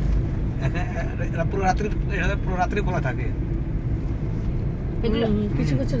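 Steady low rumble of road and engine noise inside a moving car's cabin, with voices talking over it for much of the time.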